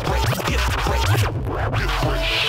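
Turntable scratching over a hip-hop beat: the record is pushed back and forth, making quick rising and falling squeals over a steady bass line. The high end drops out briefly a little after the middle.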